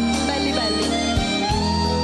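Live band music with a harmonica playing held notes, one bending upward near the end, over a steady bass and guitar backing.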